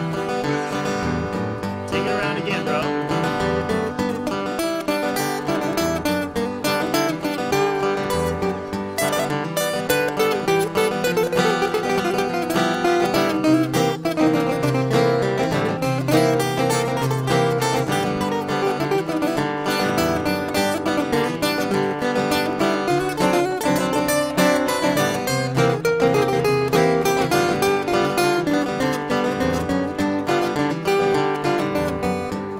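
Two acoustic guitars playing an instrumental break in a country blues, with strummed chords and picked notes at a steady, even loudness.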